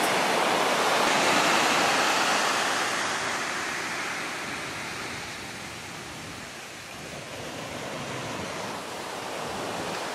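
Ocean surf breaking and washing up a sandy beach: a steady rush of water that dies down past the middle and builds again toward the end as the next wave comes in.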